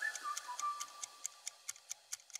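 Countdown timer sound effect: fast, even clock ticking, about five or six ticks a second. A thin high tone glides up and fades out over the first second.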